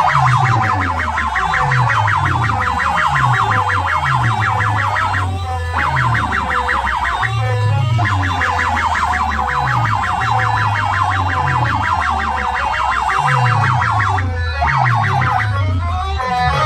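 Loud electronic DJ music played through stacks of horn loudspeakers. A fast, rapidly pulsing siren-like synth line runs over a series of bass notes that each slide downward, and the high line drops out briefly a few times.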